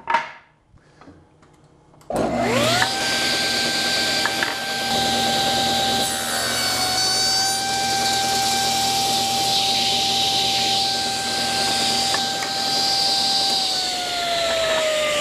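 Table saw switched on about two seconds in, its motor whine rising quickly to a steady pitch, then ripping wooden boards lengthwise down the centre. Near the end the saw is switched off and its pitch falls as the blade winds down.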